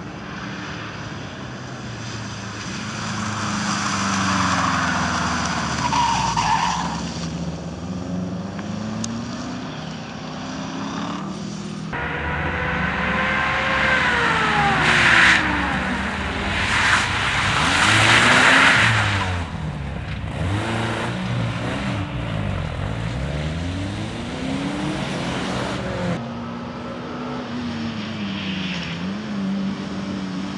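Rally-sprint cars, among them Subaru Imprezas with flat-four engines, driven hard one after another, their engines revving up and falling away through gear changes and corners. The sound breaks off abruptly twice as one car gives way to the next, and there is a loud burst of tyre skidding in the middle.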